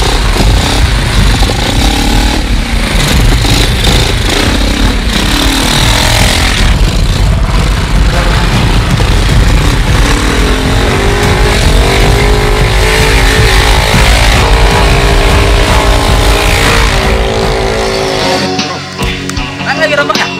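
Motor scooter engine running and revving as it is ridden along a road, with music playing over it.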